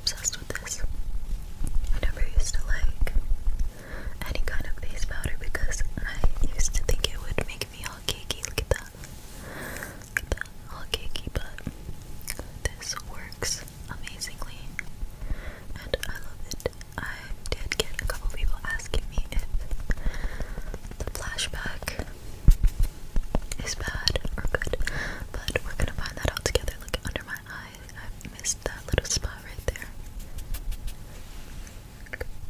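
Close-miked ASMR whispering, with many small sharp clicks and taps from a makeup sponge being handled near the microphone.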